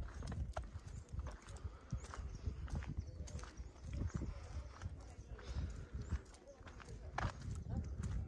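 Footsteps on a packed-earth path, as short irregular knocks, over a low rumble of wind on the microphone.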